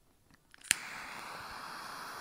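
A sharp click, followed at once by a steady hiss.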